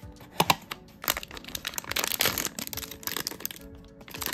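A cardboard blind box opened with a couple of sharp snaps, then a foil inner bag crinkling as it is torn open and handled.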